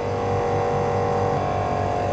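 A steady mechanical hum: several held mid-pitched tones over a low drone, even throughout.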